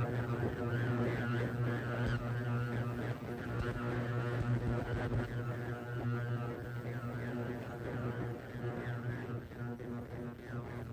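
iSonic ultrasonic vinyl record cleaner running a cleaning cycle with records turning in its water tank: a steady, loud low buzzing drone with a wavering higher hiss over it.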